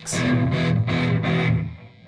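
Homemade mahogany electric guitar played through a Crate amplifier: one chord struck and left ringing, dying away about a second and a half in.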